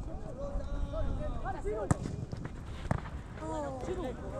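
Footballers' voices shouting and calling across the pitch, picked up by a camera in the goal, with two sharp knocks about a second apart near the middle.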